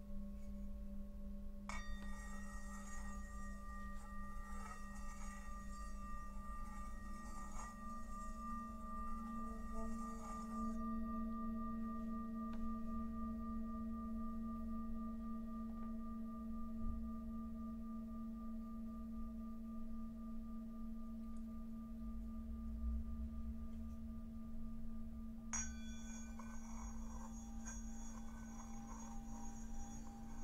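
Himalayan singing bowls ringing in long, steady, overlapping tones, with a low hum strongest underneath. A bowl is struck about two seconds in, adding a higher ring that lingers, and another bowl is struck near the end.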